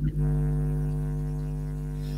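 Steady electrical buzz on the call's audio: a low hum with many overtones that holds one pitch and slowly gets a little quieter.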